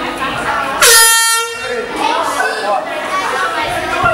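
A horn blasts once, loud and sudden, for about a second: the signal ending the round. Crowd chatter runs underneath.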